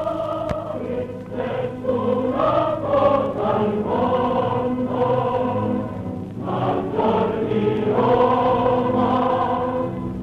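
Film score of a choir singing sustained chords, dipping briefly past the middle and then swelling again.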